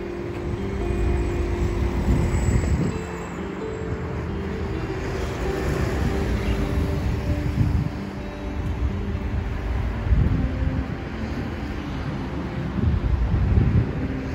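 Instrumental background music with held notes, over outdoor street noise and gusts of wind rumbling on the microphone.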